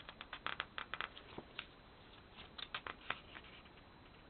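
Pages of a Mambi sticker book being leafed through and handled: a quick run of light, crisp paper rustles and ticks in the first second or so, and another cluster shortly before three seconds in.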